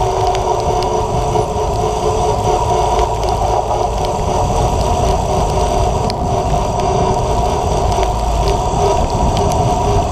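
Wind rumbling on the microphone of a camera mounted on a road bike rolling at speed down a wet road, with tyre and road noise and a steady hum that holds one pitch throughout.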